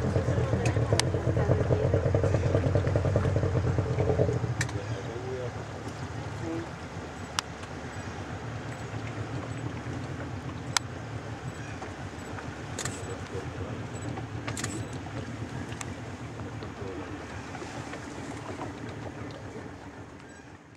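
Boat engine running steadily. It drops back to a lower, quieter drone about four seconds in, and a few sharp clicks come over it later.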